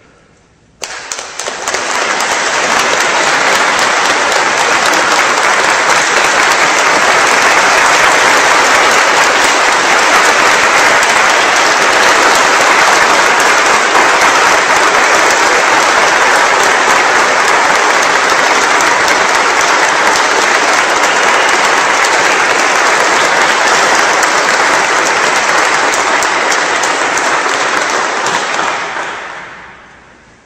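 A large congregation applauding: the clapping starts abruptly about a second in, holds steady for nearly half a minute and dies away near the end. It is the assent given to the candidate's election in the ordination rite.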